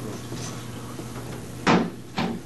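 A single sharp knock near the end, over a steady low hum.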